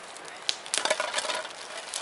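Nylon drawstring stuff sack being pulled open and rummaged through, rustling and crinkling, with a cluster of crackles about a second in and a few sharp clicks, one about half a second in; a wood campfire crackles alongside.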